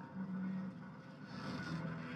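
Film sound effects playing quietly: a low, steady rumble and hum from the scene of a split ferry being held together.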